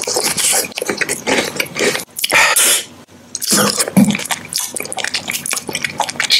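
Close-miked wet mouth sounds of eating: chewing and sucking with quick lip smacks and tongue clicks. A couple of louder, hissy slurping stretches come about two and three and a half seconds in, with a short lull between them.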